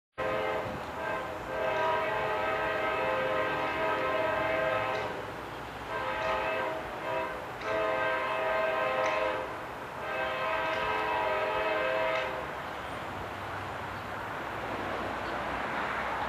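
Locomotive air horn on an approaching CSX train blowing several long and short blasts, a chord of steady tones that stops about twelve seconds in. The rumble of the oncoming train then grows louder.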